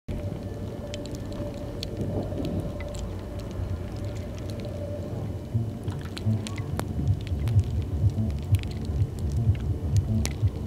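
A low, rumbling ambient drone with scattered crackles and clicks over it; irregular low pulses come in about halfway.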